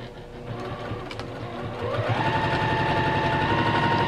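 Juki TL-2010 straight-stitch sewing machine stitching a seam. It runs slowly at first, then speeds up with a rising whine about halfway through and keeps running fast and steady.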